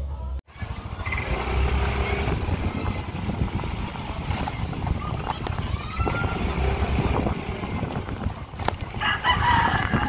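Steady outdoor street noise, with a rooster crowing near the end.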